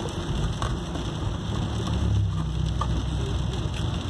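Steady low road rumble inside a moving car's cabin, with crunchy chewing of fried chicken close to the phone's microphone.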